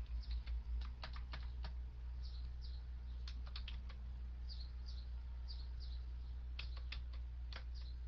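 Computer keyboard typing: irregular bursts of quick keystroke clicks, over a steady low electrical hum.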